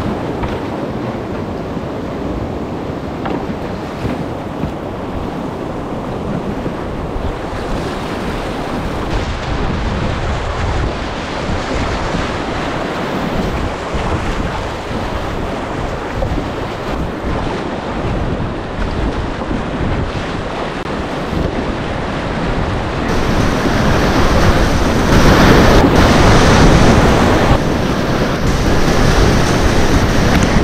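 Whitewater rapids of a creek in high release flow rushing around a kayak, heard close from the boat with wind buffeting the microphone. The rush grows louder over the last several seconds as the boat runs into heavier whitewater.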